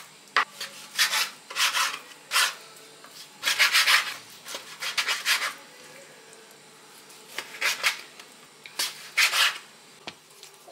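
Large kitchen knife slicing through raw meat on a bamboo cutting board: short sawing cuts that scrape along the board, about ten irregular strokes, with a pause of a second or so just after the middle.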